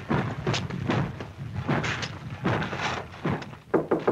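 A run of irregular thumps and clanks, the clatter of coal tubs being pushed along rails in a pit yard, ending with two sharp knocks on a door near the end.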